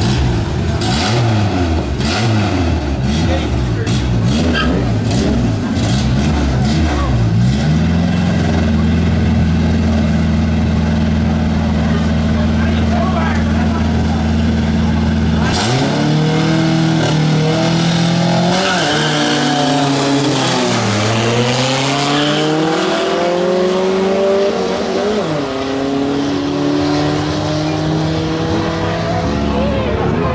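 Fiat Marea's engine revved in quick blips at the drag-strip start line, then held at steady high revs for about eight seconds while staged. About halfway in it launches: the pitch climbs and drops back at each of about three upshifts as the car accelerates hard down the strip.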